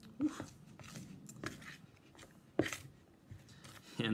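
A spoon stirring thick cornstarch and hair-conditioner dough in a bowl: soft irregular scraping with a few sharper knocks of the spoon against the bowl, the loudest a little past halfway.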